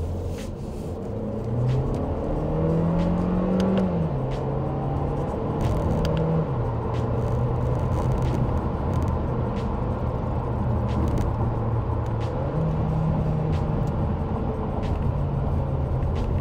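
The Audi Q2 35 TFSI's 1.5-litre turbocharged four-cylinder petrol engine is heard from inside the cabin while accelerating. The engine note rises, then drops as the seven-speed S tronic dual-clutch gearbox shifts up about four seconds in. It rises again and drops at a second upshift, then runs steady, with a further brief rise near the end.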